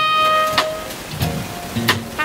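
Live jazz band playing a slow ballad. The trumpet holds one long, steady note that ends about half a second in. Drums and bass carry on underneath, with sharp drum strokes about half a second in and near the end.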